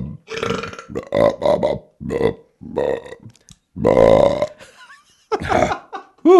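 A person burping loudly, a run of about six belches one after another, the longest about four seconds in.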